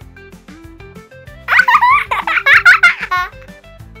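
Light background music with a cartoon character's high-pitched giggle in the middle, lasting under two seconds.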